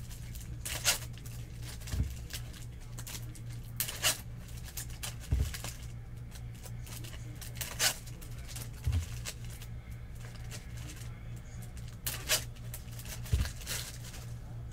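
Foil trading-card pack wrappers being torn open and handled: several short crinkly rips a few seconds apart, with a few soft thumps on the table between them, over a low steady hum.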